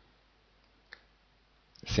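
Near silence broken by a single short computer-mouse click about a second in; a man's voice starts just at the end.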